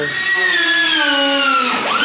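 A power tool's motor whining, its pitch slowly sagging as if under load, then climbing back up near the end.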